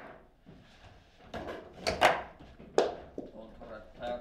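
Table football play: the ball and the rods' plastic men knocking, with three sharp, loud hits about two to three seconds in.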